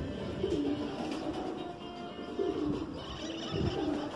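Racing pigeons cooing: a low coo about half a second in and another about two and a half seconds in.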